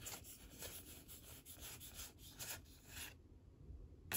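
Faint rubbing and sliding of Pokémon trading cards against one another as a pack's cards are thumbed through, in a series of soft, irregular strokes. It falls almost silent near the end.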